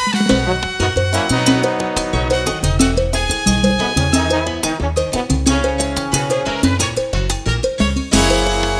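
A full salsa band playing an instrumental passage at full tempo: timbales, congas and bongos drive a steady, dense rhythm under upright bass, piano and trombones.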